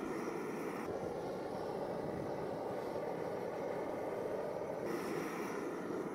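Blowtorch flame burning steadily as it scorches the surface of an oak board black. Its higher hiss thins about a second in and comes back near the end.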